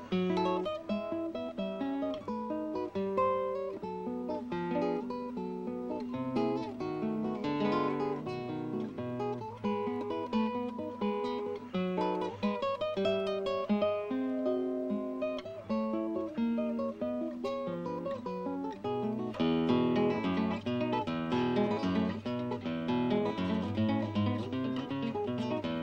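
Solo classical guitar with nylon strings, fingerpicked: a continuous piece of single plucked notes and chords. The playing grows fuller and busier about three-quarters of the way through.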